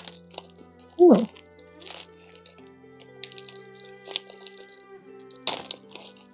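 Soft background music with long held notes, over a few short crinkles and clicks of a plastic bubble-wrap pouch being handled and opened, the sharpest one near the end.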